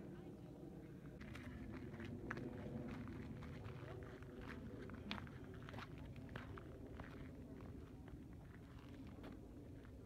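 Footsteps on a gravel desert trail: faint, irregular crunches, two or three a second, over a low steady rumble.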